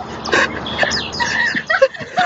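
A dog yipping and whimpering in short, high, pitch-bending calls.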